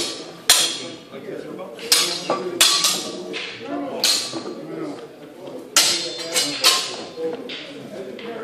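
Sword-and-shield sparring: training swords striking shields and each other in a series of sharp, irregular clacks, about seven, each ringing briefly.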